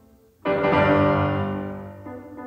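Solo piano: after a brief near-silent rest, a loud full chord is struck about half a second in and rings, slowly dying away.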